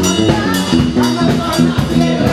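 Live band playing: an electric bass line stepping between notes over a drum kit, with a woman singing into a microphone.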